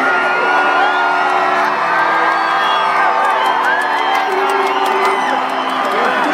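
Live electronic music from a concert sound system heard from far back in an outdoor crowd, with sustained synth chords changing every second or two and almost no deep bass, while people in the crowd whoop and shout.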